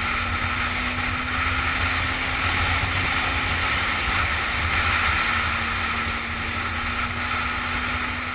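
Motorcycle riding at steady speed: wind rushing over the rider-mounted camera, with the engine running steadily underneath.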